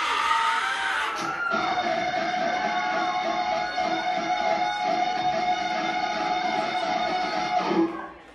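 Electric guitar played live through a club PA. Held notes ring out steadily from about a second and a half in and cut off abruptly just before the end, with crowd noise under the opening second or so.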